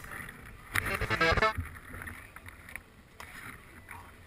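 Faint outdoor ambience with wind noise on the microphone. A short pitched sound, about a second in, cuts off suddenly, and a few light knocks follow.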